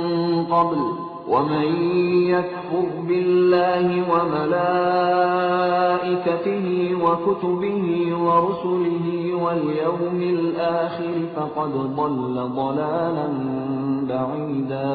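A male reciter chanting the Quran in Arabic in the melodic tajweed style, drawing the words out into long held notes with gliding, ornamented turns of pitch.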